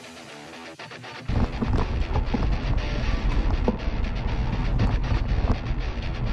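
Quiet background music, then about a second in a sudden loud rush of wind over an action-camera microphone and rattling from a mountain bike riding on a dusty dirt trail.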